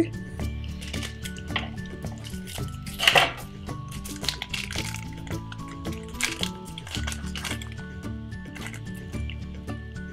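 Background music with steady notes, over the crinkling and rustling of a foil collector-card pack being opened by hand, loudest about three seconds in.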